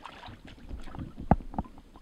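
Swimming-pool water sloshing and lapping around people wading in it, with two sharp slaps close together a little past the middle.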